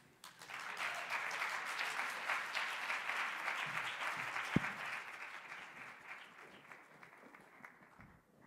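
Audience applauding, building within the first second and fading away over the last few seconds, with a single sharp knock about halfway through.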